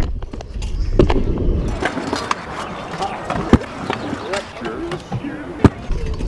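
Stunt scooter rolling on skatepark concrete, with about four sharp clacks of the deck and wheels hitting the ground, the loudest near the end.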